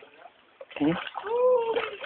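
Light splashing of river water as people wade and move about in it. A short voiced exclamation comes a little before a second in, followed by a longer drawn-out call, which is the loudest sound.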